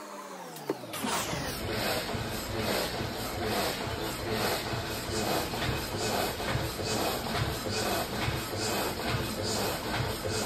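Steady machine noise, like a blower, starting up about a second in after a humming tone falls away, and running on loud and even.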